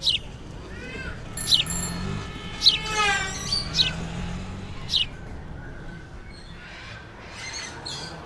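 Birds chirping: short, sharp calls falling in pitch, about one a second, with a few lower falling calls among them, growing fainter in the last few seconds.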